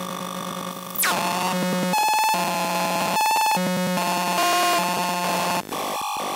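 Mini Lunetta synthesizer made of CMOS logic chips, heard raw with no effects, playing harsh buzzy square-wave tones that switch back and forth in stepped, glitchy patterns. A fast downward pitch sweep comes about a second in, and two stretches of rapid clicking pulses follow, with a short dropout near the end.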